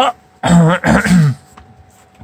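A man's short wordless vocal sound, in two parts lasting under a second, about half a second in.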